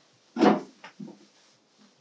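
A short, loud bump about half a second in as a person gets up from a seat holding a large patchwork quilt, followed by a few faint rustles and knocks.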